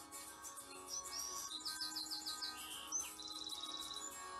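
A songbird singing over quiet background guitar music: a run of about five quick repeated notes, then a rapid trill near the end.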